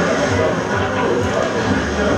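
A film soundtrack played over a hall's speakers: voices mixed with music, continuous and fairly loud.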